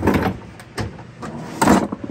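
A wooden drawer under a workbench being pulled open: two short scraping, sliding noises, one at the start and a louder one about a second and a half in.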